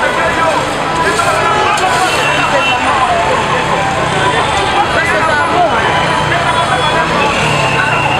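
Several people talking and calling out at once, their voices overlapping without pause, over a steady street noise.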